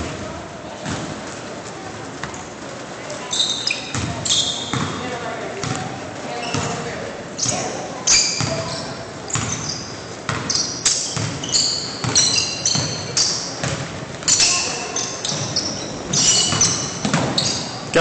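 Basketball being dribbled and passed on a hardwood gym floor, with repeated knocks of the ball and many short, high squeaks of sneakers as players cut and stop.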